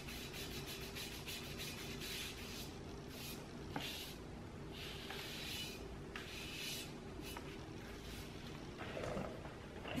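A lint-free cotton sock worn over the hand buffing spray wax off a chalk-painted lamp base: faint, irregular rubbing strokes as the excess wax is wiped away.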